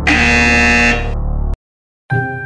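Game-show style 'wrong answer' buzzer sound effect: one loud, harsh buzz lasting about a second, then the audio cuts to silence.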